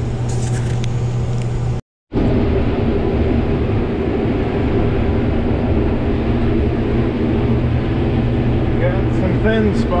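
Combine harvester running while shelling corn, heard from inside the cab: a steady engine and machine hum with a few fixed tones. The sound cuts out for a moment about two seconds in, then the same hum carries on.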